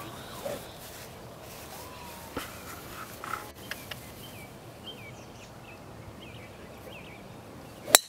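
Quiet outdoor background with a few faint bird chirps, then near the end one sharp crack of a driver's clubhead striking a golf ball off the tee.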